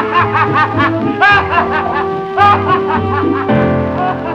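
Instrumental closing bars of a 1957 bolero played from a 78 rpm record: short wavering notes from the orchestra, changing about three and a half seconds in to long held notes of the final chord.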